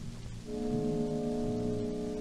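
Orchestral recording on a 1940s Columbia 78 rpm shellac set: after a thinner moment, the orchestra comes in about half a second in with a held chord over a low repeating figure. An even record-surface hiss runs underneath.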